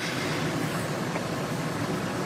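Steady hiss of background noise, even and unchanging, in a pause between spoken phrases of a recorded statement.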